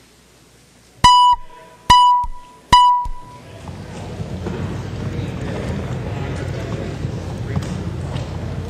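Three matching chime tones, a little under a second apart, each struck sharply and dying away quickly: the signal that the roll call vote on the motion is open. A steady murmur of voices in the chamber then rises behind them.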